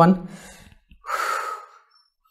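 A man takes one deep, audible breath about a second in, lasting about half a second, as he composes himself after getting emotional. The last word of his speech fades out just before it.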